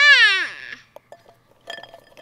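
A toddler's short, loud, high-pitched squeal that rises and then falls in pitch. Near the end come a few light clinks of chalk sticks in a ceramic pot.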